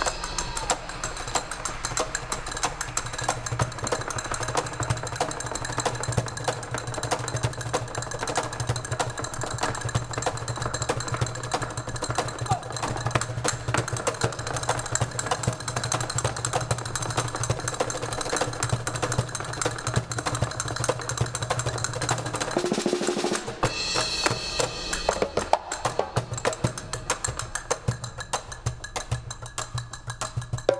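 Castanets played in fast clicks and rolls together with hand drums and a drum kit, a dense, continuous rhythmic percussion duet.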